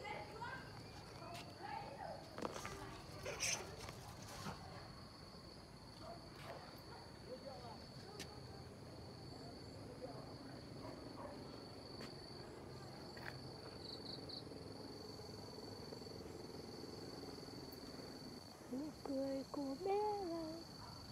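An insect sings a steady, high-pitched trill that runs on without a break, turning into a few short pulses about two-thirds of the way through. There are faint voices and a couple of knocks in the first few seconds.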